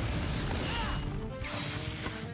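Fight-scene soundtrack music under cartoon battle sound effects: a sustained rushing blast and crashing impacts.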